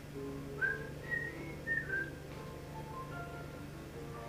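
Piano music playing over a steady low hum. From about half a second in to about two seconds, a person whistles a few short high notes over it, the first one sliding up.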